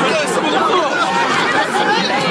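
Crowd chatter: many voices talking over one another close by, at a steady level.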